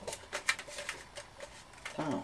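Heavy cardstock being pressed and smoothed around a metal tin can by hand: a run of irregular small clicks and taps, the sharpest about half a second in.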